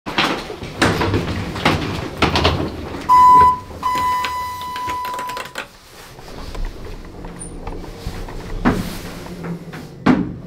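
Elevator signal beeping: one short, loud electronic beep, then a longer one of about a second and a half at the same pitch. A few knocks and clicks come before it, and another knock near the end, as the elevator is used.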